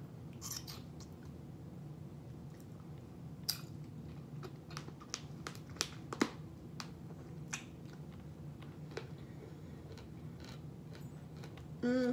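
A person biting into and chewing a kiwano (horned melon) with its peel on: quiet chewing with scattered small clicks.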